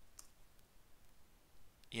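A single faint keyboard click a moment in: the Enter key pressed to run a command. Otherwise near-silent room tone, with a man's voice starting right at the end.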